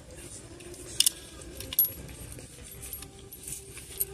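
A silver chain-link bracelet jingling as the hand handles a sweater on a rack, with two sharp metallic clinks about one second and just under two seconds in.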